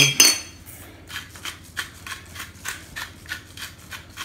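Hand-twisted stainless steel salt grinder grinding coarse pink Himalayan salt, a run of quick rasping crunches about four or five a second.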